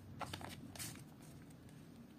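Faint handling sounds of trading cards and a foil booster pack: a few light clicks and rustles in the first second, then quiet room hiss.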